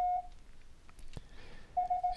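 Morse code (CW) side tone generated by FLDigi, a steady beep of about 700 Hz. One tone stops shortly after the start and another begins near the end, with a couple of faint clicks in between.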